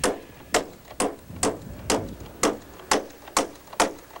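Claw hammer driving nails through a metal strip into the wooden runner of a hand-built sled. Nine steady blows, about two a second, each with a short ring.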